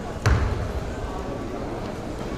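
One sharp thud about a quarter of a second in, a martial artist's foot stamping onto the foam floor mat as he drops into a low stance, echoing briefly in a large hall, over a steady murmur of spectators' talk.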